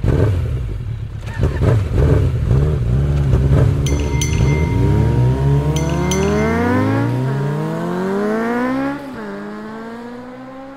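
A motor vehicle engine, likely as an outro sound effect, rumbles loudly and then accelerates hard through the gears. Its pitch rises and drops back at shifts about seven and nine seconds in, then it carries on climbing and fades.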